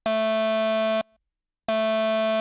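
u-he Zebra2 software synthesizer playing a buzzy, overtone-rich note at one steady pitch for about a second, stopping cleanly, then the same note starting again near the end.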